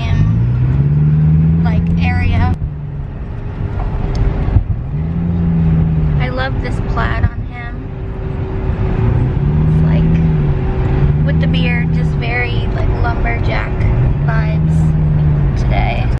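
Inside a moving car's cabin: steady engine and road rumble, with a low hum that rises and falls in pitch several times and indistinct voices over it.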